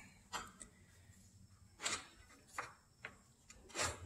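A handful of faint, short scrapes and rubs of a rubber hydraulic hose being worked up through a metal tube on a John Deere 922 combine header.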